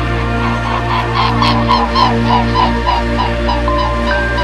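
A bird calling a run of about a dozen short notes, about four a second, loudest in the first half and fading toward the end, over soft sustained synth music.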